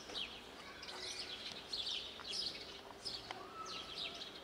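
Small birds chirping, many short high chirps in quick, uneven succession, over a faint steady hum.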